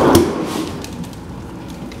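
Pull-out freezer drawer of a refrigerator sliding open on its rails, with a loud rush and rattle of the wire baskets in the first half second, then fainter clicks and rattling as it settles.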